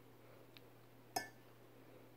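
A metal spoon clinks once, sharply, against the rim of a glass mixing bowl, after a fainter tap; otherwise near silence.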